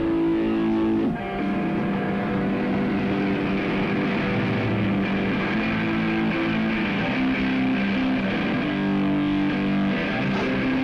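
A live rock band's distorted electric guitars playing held, droning chords that shift pitch every second or so, at an even level.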